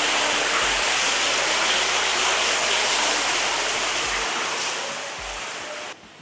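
Water pouring from a wall-mounted spout into a swimming pool, a steady splashing rush that fades out over the last two seconds.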